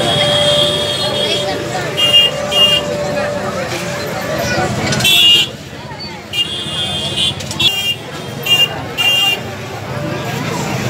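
Crowd chatter with repeated short, high-pitched horn toots, several in quick pairs, from motorcycles edging through the crowd.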